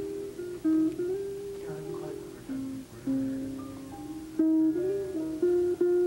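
Recorded instrumental music played back on a portable stereo (boombox) in the room: a melody of held notes, some sliding in pitch, over lower accompaniment.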